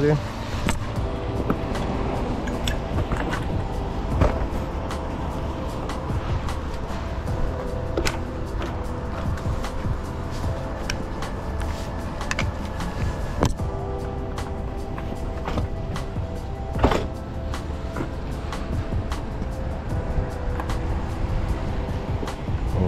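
Background music with long held notes, over low street rumble. Scattered sharp clicks and knocks come through, the loudest about 17 seconds in.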